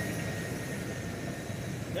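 Steady low rumble of outdoor background noise, even and unbroken, with no words over it.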